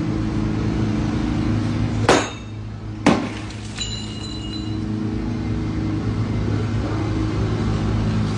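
Two sharp cracks about a second apart over a steady low hum, with a short high ringing tone soon after the second crack.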